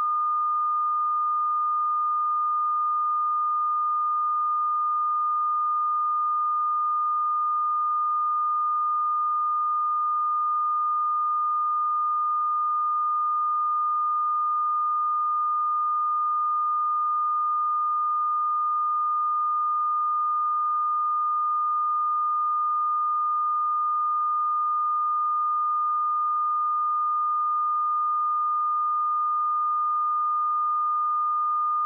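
Steady electronic reference test tone, one unbroken high pitch at a constant level, as laid on the head of a video tape with its slate.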